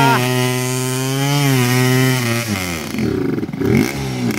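Trail bike engine revving hard at a high, steady pitch as it climbs a steep muddy slope. About two and a half seconds in, the revs sag and then waver up and down as the bike bogs and struggles to make the hill.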